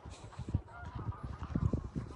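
Greylag geese giving short honking calls as the flock walks across grass, over low thumps of footsteps following close behind.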